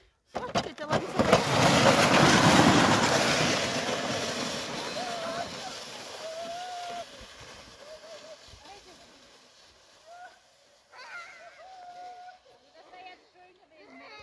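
Steerable plastic sled sliding off down a packed-snow slope: a loud scraping hiss that starts about a second in and fades over several seconds as the sled moves away.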